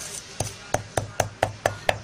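Pestle pounding seeds in a heavy stone mortar: a regular series of sharp knocks, about three to four a second.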